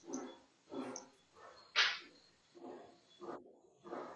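A dog barking repeatedly and faintly, about twice a second, with one louder, sharper bark about two seconds in.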